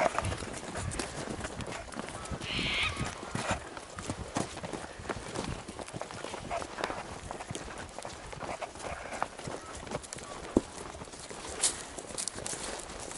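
A horse walking over grass and dirt, its hooves falling in soft, uneven steps, with two sharper knocks near the end.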